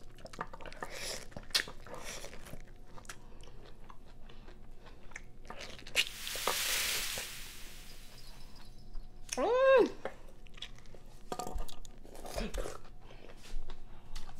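Biting and chewing juicy pineapple flesh without hands: wet, crunchy mouth sounds with many small clicks. About six seconds in there is a long breathy hiss, and a short hummed "mm" comes near ten seconds.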